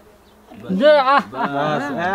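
A voice starts about half a second in, after a brief lull, its pitch sweeping up and down.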